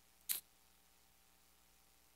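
A single short breathy noise from a man at a close headset microphone, about a third of a second in, over otherwise near-silent room tone.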